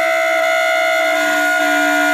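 Alto saxophone and clarinet duo holding long sustained notes together, one high and one lower, at a steady level; the lower note shifts slightly in pitch about one and a half seconds in.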